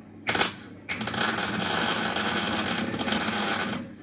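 MIG welding arc on steel, a short burst about a quarter second in, then a steady crackling bead for about three seconds that stops just before the end, as a tread bracket is welded to the square steel-tube stair stringer.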